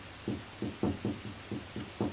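A quick run of dull knocks, about four a second, eight or so in all.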